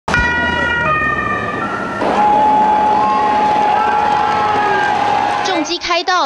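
Escort motorcycle sirens sounding over the noise of a dense roadside crowd: a few steady tones step in pitch for the first two seconds, then one long steady tone holds until near the end.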